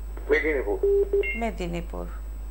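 A caller's voice over a telephone line, in short broken phrases, with a brief high electronic two-tone beep about halfway through.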